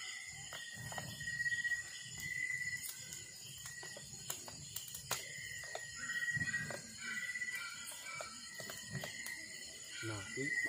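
Night insects trilling in a steady, pulsing high chirp, with scattered snaps and crackles from kindling catching in a wood fire pit.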